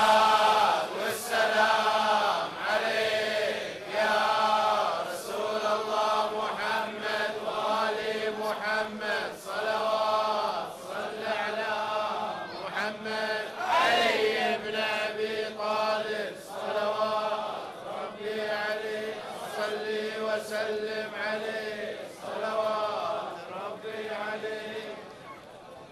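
Voices chanting a short phrase over and over in a steady rhythm, about one phrase every second and a half. It is typical of a chanted salawat, the blessing on the Prophet.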